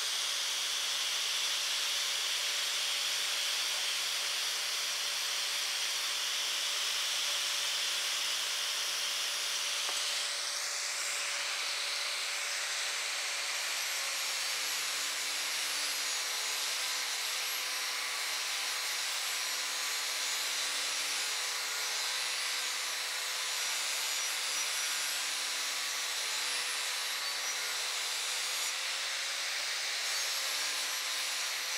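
Angle grinder mounted in an All American mower blade sharpener, running continuously as it grinds the edge of a steel mower blade: a steady high grinding hiss over the motor's whine. The motor's pitch drops slightly about halfway through.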